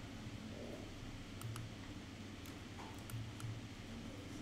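A handful of faint, sharp clicks from a computer mouse and keyboard, spaced irregularly, over a low steady room hum.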